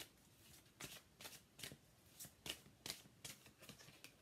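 A large deck of cards being shuffled by hand: quiet, irregular flicks and slaps of the cards, about two a second.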